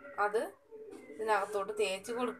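A high-pitched voice with pitch gliding up and down, in two bouts: a short one just after the start and a longer one in the second half.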